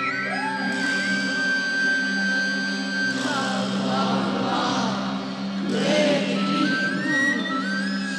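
Live electronic music from a keyboard synthesizer. A steady low drone runs under high, theremin-like tones that glide upward in steps and then hold, with a denser, noisier wash in the middle.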